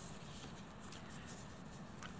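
Faint room tone picked up by the podium microphones, with a couple of soft, faint ticks.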